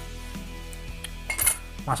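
A short, light metallic clink about one and a half seconds in, metal touching metal, over a steady low hum.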